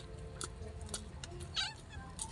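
Domestic cat meowing beside the table, with a short call near the end.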